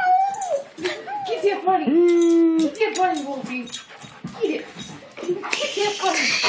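A dog whining in a run of short whines that rise and fall, one lower and longer about two seconds in, frustrated at a toy bunny caught in its collar that it cannot reach. Light scuffling clicks as it twists around.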